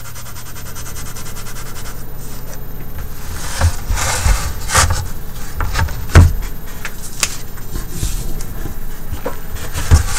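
White colored pencil rubbing and scratching on paper while shading. A few knocks and bumps fall in the middle, the loudest about six seconds in.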